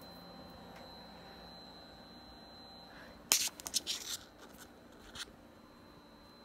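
Compaq Deskpro 286 running as it tries to boot from its hard drive: a steady hum with a faint high whine. A quick cluster of clicks and rustles comes about three seconds in, with one more click near the end.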